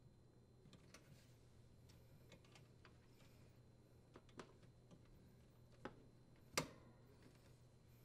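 Near silence with scattered faint clicks and light taps from hands working wire nuts and tucking wires into a dishwasher's sheet-metal junction box, one sharper tap about six and a half seconds in, over a faint low hum.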